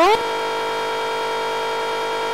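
A steady, unchanging buzzy electronic tone held throughout: the last sound of a rising voice, frozen and sustained by a freeze effect at a constant pitch and level.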